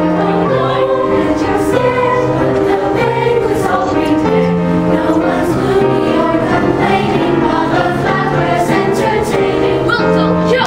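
Large combined middle school choir singing a Disney song medley.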